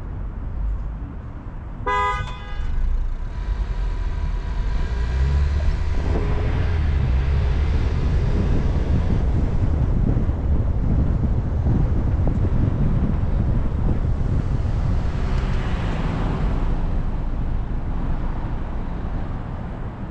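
A short car-horn toot about two seconds in, then a car's engine and road noise as it pulls away and gets up to speed: a low rumble that grows louder over the next few seconds and then holds steady.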